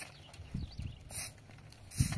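A short straw brush swept in strokes across a sheeted roof, a brief swish about every second, with a few low thuds in between.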